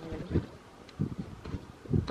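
Wind buffeting the phone's microphone in uneven low gusts of rumble, with a couple of faint clicks.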